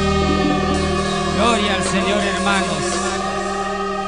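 Live gospel worship music: a sustained keyboard chord with several voices singing over it, the voices coming in about a second and a half in.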